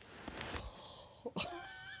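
A person's breathy exhale, a short catch in the throat, then a quiet high-pitched squeak rising into a giggle near the end.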